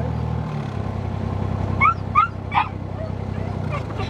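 Narrowboat diesel engine running, its throttle eased back about half a second in to a quieter steady beat. Around two seconds in, a dog gives three short, rising whimpering yelps.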